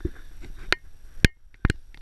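Four short, sharp clicks or knocks spread over two seconds, the loudest just past a second in.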